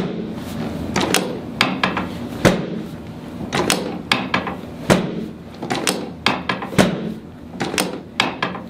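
Chiropractic drop table's drop section clacking down under repeated hand thrusts on the sacrum: a series of sharp clacks, about one or two a second, some in quick pairs. The drops are meant to bring the sacrum back to midline.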